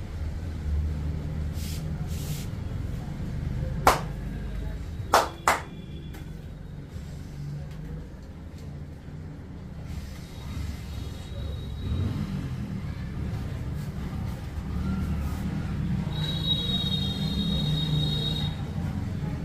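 Three sharp snaps during a hands-on back massage, one about four seconds in and a close pair about a second later, over a steady low rumble. A high steady tone sounds near the end.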